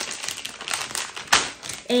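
Crinkly packaging being handled and opened out, a run of small crackles with one sharper crackle a little past halfway.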